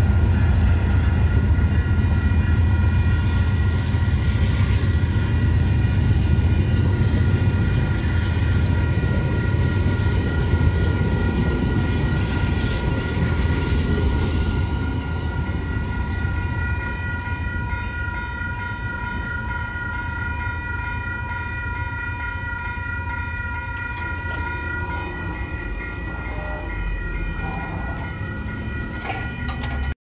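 A VIA Rail passenger train led by a P42DC diesel locomotive rumbling by at low speed, the rumble slowly fading over the second half. Level-crossing warning bells ring steadily alongside it, standing out more as the train's sound dies down.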